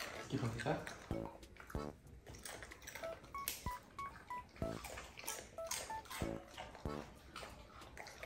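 Soft background music of short, beeping plucked notes, with faint crackling crunches of dogs chewing a crunchy corn snack.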